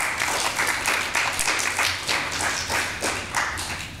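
Church congregation applauding: many hands clapping in a dense, even patter that thins out near the end.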